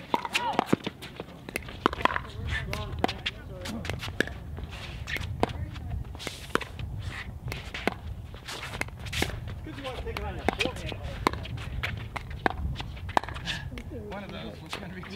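Pickleball paddles hitting a hard plastic ball in a long doubles rally: many sharp pops at irregular intervals, several close together in quick volleys, with shoes scuffing on the hard court.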